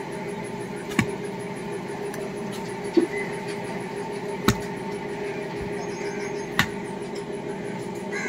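A steel spade knocking and scraping on a concrete floor as powdered shell lime is shovelled: four sharp knocks a second or two apart, over a steady low hum.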